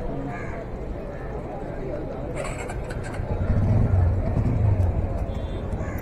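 Busy city street ambience: background voices of passers-by over traffic noise, with a short hiss about two seconds in and a vehicle engine rumbling close by from about three seconds in.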